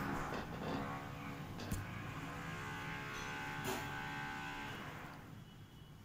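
A long, low, drawn-out call at a steady pitch that fades out after about four and a half seconds.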